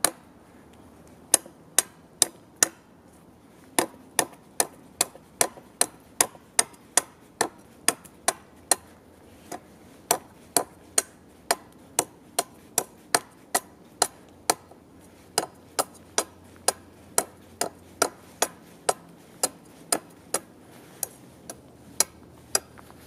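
Schrade Priscilla (SCHMBS) makhaira brush sword hacking at the end of a hand-held stick to rough out a point: a long run of sharp chops into the wood, about two a second, with a few short pauses.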